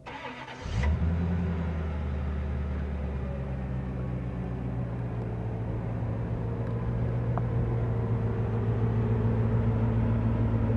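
A 1991 Corvette's 5.7-litre V8 starts with a short burst less than a second in, then idles steadily with a low, even sound that grows slightly louder near the end.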